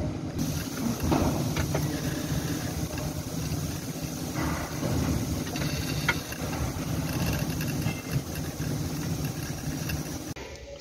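Toyota 1KD-FTV four-cylinder turbodiesel idling steadily with its newly fitted turbocharger, with a couple of light ticks.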